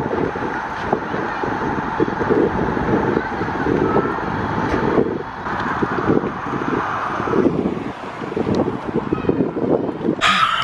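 Wind buffeting the microphone outdoors, with a car's engine and tyres as it drives slowly off through a car park.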